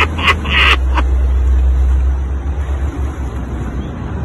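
A steady, strong low rumble, with a few short sharp sounds in the first second.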